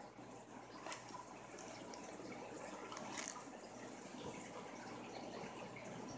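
Faint steady trickle of water from the aquarium tanks in the room, with a couple of faint clicks about a second and three seconds in.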